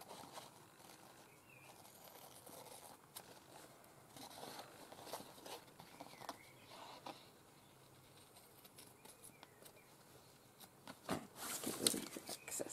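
Faint rustling and light ticks of fabric and card being handled, with a louder rustle near the end.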